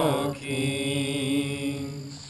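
A group of voices singing a worship song together, gliding into one long held note.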